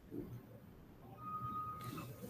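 Faint room tone from a live microphone, with a short, thin steady tone a little over a second in.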